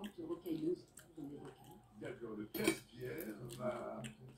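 Tableware clinking at a meal, with one sharp clink about two and a half seconds in, under background voices.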